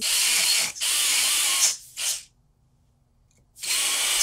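Slow-speed dental handpiece spinning a 0.3 mm double-sided diamond IPR disc through the contact between front teeth, a hissing grind of interproximal reduction. It runs in spurts through the first couple of seconds, stops for over a second, and starts again near the end.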